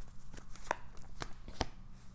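Tarot cards being handled as one is drawn from the deck and laid on the spread: a handful of sharp clicks and taps of card on card and tabletop.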